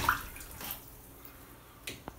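Lush Rocket Science bath bomb fizzing faintly as it dissolves in a full bathtub of water, with a short click near the end.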